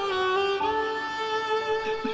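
Background music: a violin playing slow, held notes that change pitch a few times.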